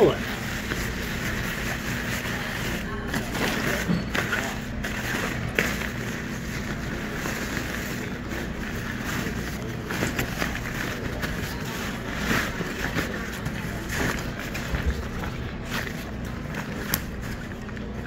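Waterproof nylon tarp fabric rustling and crinkling as it is rolled up tightly and packed into a backpack, with irregular scrapes and crackles as it is pressed and folded.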